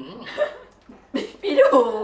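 People talking with brief chuckling.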